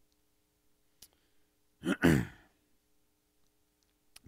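A man's sigh about two seconds in: a short breathy exhale with voice that falls in pitch. Before it there is a faint steady hum and a single light click about a second in.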